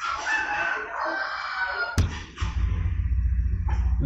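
A rooster crowing: one long call of about two seconds, followed by a sharp click and a steady low hum.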